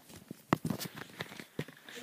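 Footsteps and knocks on a floor: a few irregular thumps, the sharpest about half a second in.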